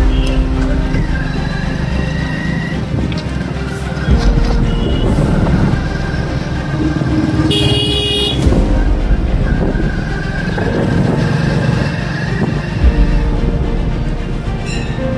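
Street traffic heard from a moving motorcycle or scooter: a steady rumble of engine and road noise, with a vehicle horn honking briefly about seven and a half seconds in.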